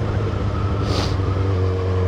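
Kawasaki Ninja 1000SX inline-four engine running steadily while riding at road speed, its note shifting slightly about one and a half seconds in. A short hiss sounds about a second in.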